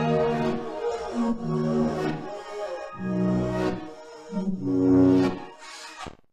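A short music loop played back through the GreenHAAS saturator/spreader plugin with its settings automated. Pitched chord phrases repeat about every second and a half while the tone shifts with the automation, and playback cuts off at the end.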